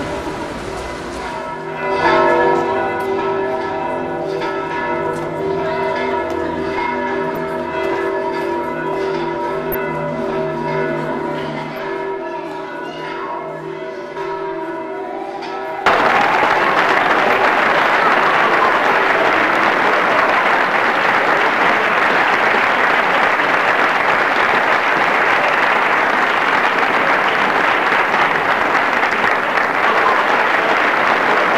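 Church bells ringing, several bells struck over and over with long ringing tones. About halfway through the sound cuts suddenly to steady applause from a crowd.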